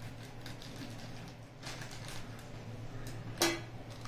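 Scissors snipping through a plastic courier bag and the bag rustling, then near the end one sharp clink with a brief ring as the metal scissors are set down on a glass tabletop.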